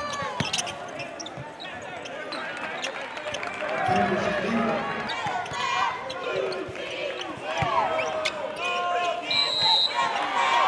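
Live basketball game sound in an arena gym: a basketball bouncing on the hardwood, sneakers squeaking, and players' and spectators' voices. Near the end a short, shrill, steady whistle blows.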